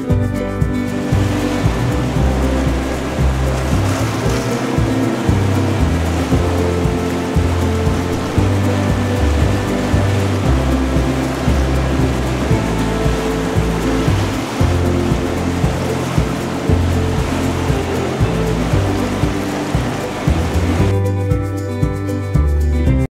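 Whitewater rapids rushing over steady background music; the water noise comes in about a second in and drops away about a second before the end.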